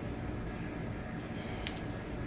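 Quiet room tone with a steady low hum, and one faint light click near the end.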